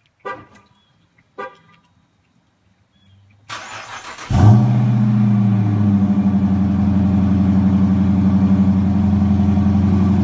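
Two short chirps about a second apart, then the 2016 Dodge Charger R/T's 5.7-litre HEMI V8 cranks and catches on a cold start about four seconds in. It flares briefly, then settles into a steady idle.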